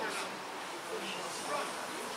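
Faint, indistinct voices of people calling across an open pitch over a steady noisy outdoor background.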